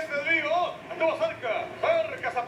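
A man's voice talking, as heard from a television sports broadcast.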